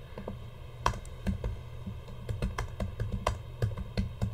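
Typing on a computer keyboard: an irregular run of keystroke clicks, a few of them louder than the rest.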